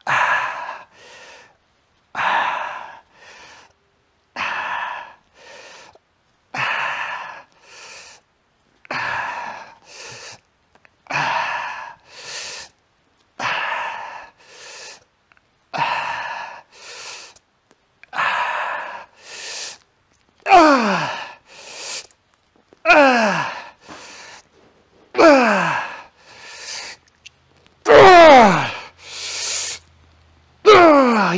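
A man breathes forcefully through a set of dumbbell chest flies: one hard breath and a shorter second one about every two seconds, one pair per rep. In the last third, as the set gets hard, the breaths turn into straining groans that fall in pitch, the longest and loudest near the end.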